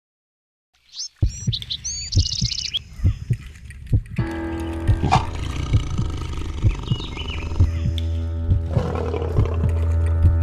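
Film soundtrack starting suddenly about a second in with high bird-like chirps and quick low drum hits, then a sustained music bed coming in at about four seconds with further drum hits and calls over it, growing louder.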